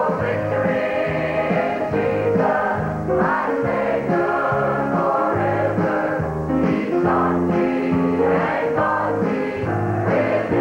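A mixed choir of men and women singing a Southern gospel hymn in harmony, holding notes that change every second or so.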